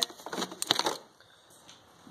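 Ribbed rubber air intake tube pulled loose by a gloved hand: a few short scrapes and crackles in the first second, then quiet.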